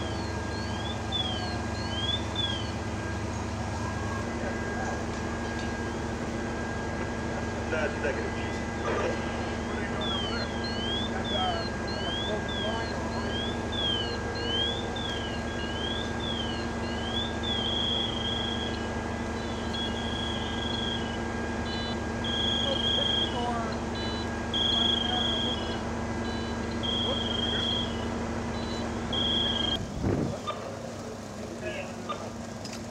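An electronic alarm cycling through its sounds: a fast warble rising and falling about twice a second, which stops and comes back, then changes to a repeating steady beep about a second long. Under it runs a steady low hum of idling engines.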